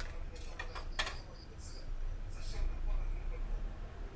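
Kitchen knife cutting through red onion halves on a tray: a few sharp clicks and crunches about half a second to a second in, then two short scraping strokes.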